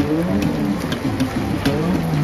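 Funk bass line on an electric bass guitar, the low notes sliding up and down in repeated swoops, with a few sharp clicks on top.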